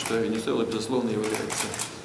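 A man speaking in Russian.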